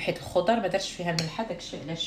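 Utensils clinking and scraping against a glass bowl as a chunky salad with cream cheese is mixed, a few sharp clinks near the start and about a second in, with a woman talking over it.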